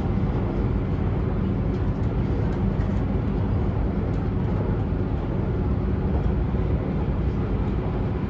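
Steady running noise of a train in motion, heard from inside the carriage: an even low rumble with a faint hum.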